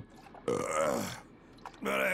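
A man's long, voiced burp about half a second in, falling in pitch as it goes, just after a swig from a hip flask.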